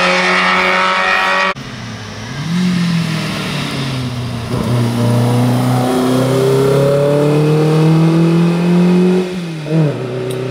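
A historic Škoda saloon race car's engine revving hard as it accelerates out of a hairpin on a hill climb. Its pitch climbs, drops at a gear change about five seconds in, then rises steadily again, with a short rise near the end. In the first second and a half a different high-revving engine runs and cuts off abruptly.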